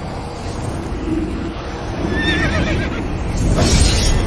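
Intro sound effects: a dense low rumble with a brief wavering, whinny-like high cry about two seconds in, then a rising whoosh near the end.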